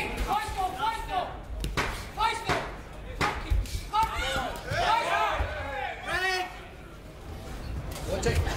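Men shouting across the cage during a kickboxing exchange, with several sharp thuds of impacts cutting through about two and three seconds in as the fighters trade strikes and close in against the cage fence.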